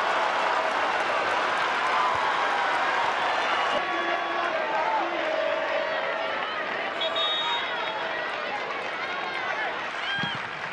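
Stadium crowd cheering and shouting as a goal is celebrated, a mass of overlapping voices that slowly dies down. A brief high steady tone sounds about seven seconds in.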